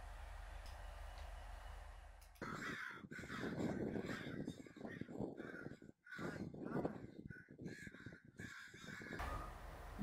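A group of crows cawing, many calls overlapping, starting a couple of seconds in and stopping shortly before the end. A faint steady hum is heard before the calls begin.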